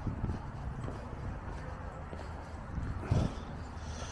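Footsteps walking on stone paving at a steady pace, over a low steady outdoor rumble.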